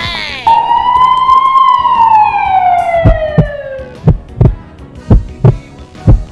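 Edited-in comedy sound effects: a long falling whistle-like tone that slides slowly down in pitch, then deep heartbeat thumps in pairs over the last three seconds.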